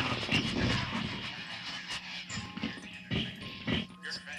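Electro-acoustic noise composition made on primitive equipment: a dense, crackling wash of noise that thins about halfway through to a steady low hum, broken by two sharp loud bursts near the end.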